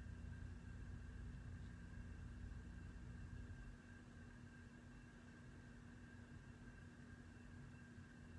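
Near silence: room tone with a faint steady hum. A low rumble underneath drops away about four seconds in.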